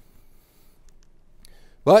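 A quiet pause in a lecture hall, with a few faint clicks and light handling at the lectern as the presentation slide is advanced. A man's voice comes back in near the end.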